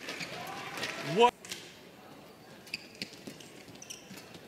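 Badminton rally: rackets striking the shuttlecock in a string of sharp taps through the second half, over the low hum of an indoor arena crowd.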